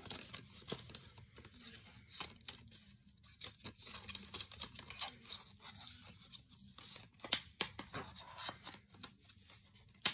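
Plastic DVD cases being handled and opened, with scattered small clicks and rustles. Two sharp plastic snaps come a little after seven seconds in, and another near the end.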